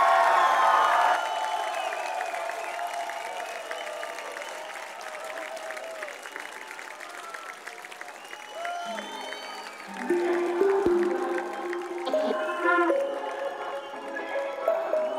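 Audience applauding, cheering and whistling as a brass band's final chord dies away in the first second, the applause slowly thinning out. About ten seconds in, a few held low brass notes sound over the clapping.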